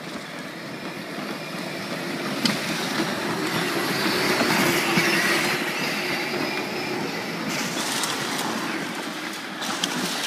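Modified Power Wheels ride-on toy cars driving over concrete: hard plastic wheels rumbling and electric motors whining, louder toward the middle, with a few clicks and knocks.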